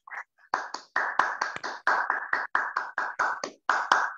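Hands clapping, a steady run of sharp claps about five a second, heard over a video-call connection.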